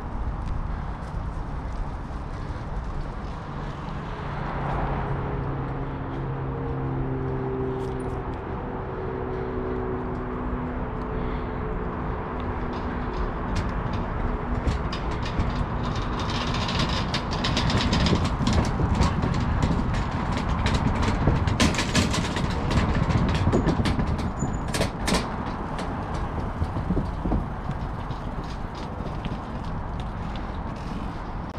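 Bicycle riding along a trail with low wind and rolling rumble on the camera microphone. In the second half the tyres clatter over the planks of a wooden footbridge, a quick run of clicks and rattles. A steady low droning tone is heard for several seconds early on.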